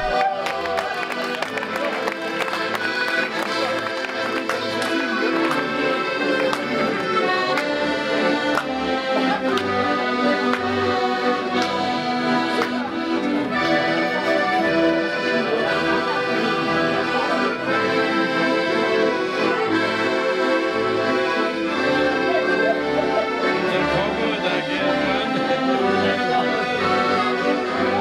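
An ensemble of accordions playing a traditional tune together, held chords over short bass notes that pulse in a steady rhythm.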